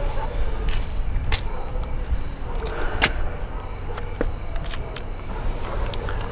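Crickets chirping in a steady high trill, over a low background rumble, with a few scattered sharp clicks.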